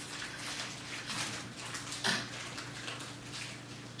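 A quiet pause in a courtroom broadcast heard through a television's speaker: faint rustling and room noise over a steady low hum, with a couple of slightly louder stirrings about one and two seconds in.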